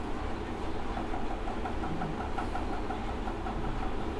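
Steady low rumble of a running engine, with a fast pulsing tone of about six beats a second starting about a second in.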